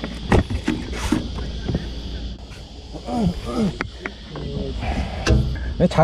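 Short wordless voice sounds from the men on deck and a few sharp knocks of gear being handled on a fibreglass boat deck, over a steady low rumble.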